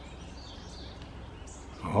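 Faint outdoor background with a steady low hum and a few faint, short, high-pitched bird chirps; a man's voice comes in near the end.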